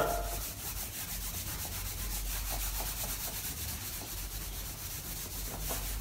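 A handheld whiteboard eraser rubbing across a whiteboard in soft, quick back-and-forth strokes, wiping off marker writing.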